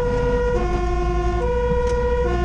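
Fire engine's two-tone siren heard from inside the cab, alternating between a high and a low note a little under once a second, over the low drone of the truck's engine.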